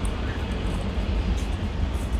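Steady low rumble of outdoor background noise, with no clear voices.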